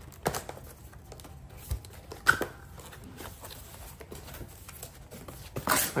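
Cardboard box being handled and opened by hand: a few scattered light scrapes and knocks of cardboard, the sharpest about two seconds in.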